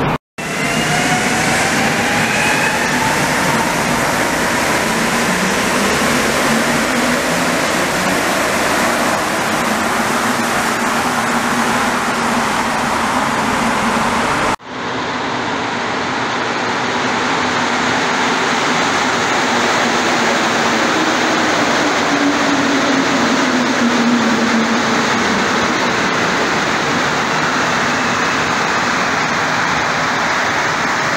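Rubber-tyred Montreal metro trains running in underground stations, a loud steady roar throughout. In the first part a train's motors give a rising whine as it pulls away. After a sudden cut another train comes into a station with a low falling tone.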